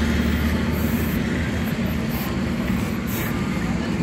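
Maruti Suzuki Swift hatchback's engine running steadily, a low even hum.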